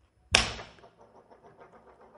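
A single heavy hammer bang, played as a show sound effect, about a third of a second in; it rings off over about half a second and then trails away faintly.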